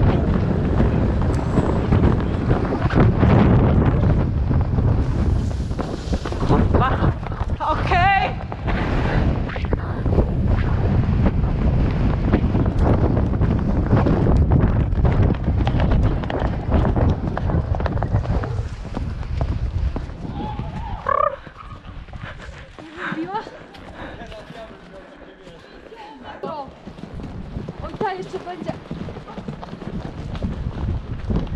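Horses cantering on a sandy dirt track, their hoofbeats mixed with heavy wind rush on the microphone of a camera worn by one of the riders. After about 20 seconds the rush drops away and it goes much quieter as the horses slow down.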